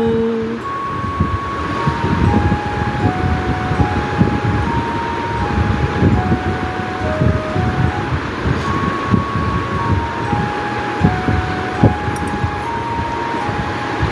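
Slow background melody of single held notes, one at a time, its phrase starting over about seven seconds in, over a steady low rumbling noise with crackle.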